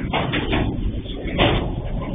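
Heavy diesel freight train passing close by: a low locomotive engine rumble with repeated knocks and clanks from the passing container wagons, the loudest knock about one and a half seconds in.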